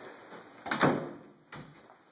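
An interior house door being worked: a short creak with sharp clicks a little under a second in, then a soft low thump.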